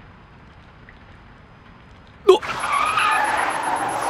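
Car brakes slammed on, tyres screeching on the road for about two seconds in an emergency stop, starting a little over two seconds in with a short startled cry. Before it there is only a quiet steady hiss of rain.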